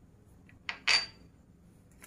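Two quick clinks of kitchenware about a second in, the second brighter with a brief ring: a spoon and a small glass spice bowl knocking against a steel mixing bowl while spices are spooned in.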